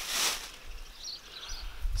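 A brief rustle near the start, then quiet outdoor ambience with faint bird chirps about a second in.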